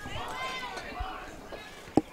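Distant voices calling out around a softball field, then a single sharp knock near the end.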